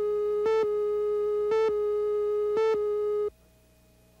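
Countdown leader on a videotape slate: a steady electronic line-up tone, with a brief louder beep about once a second as the numbers count down. The tone cuts off suddenly a little over three seconds in, leaving only a faint hum.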